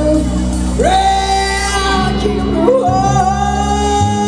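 Live rock band with electric guitars, bass and drums, and a male lead singer holding long notes, the first swooping up about a second in and a second one starting near the three-second mark.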